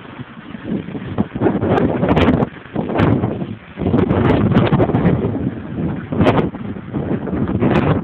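Snow rushing and scraping against a Honda CR-V's bonnet and windscreen as the 4x4 ploughs through a deep drift, heard from inside the cabin: a loud, rough rushing that surges and eases, dipping briefly about four seconds in, with several sharp knocks.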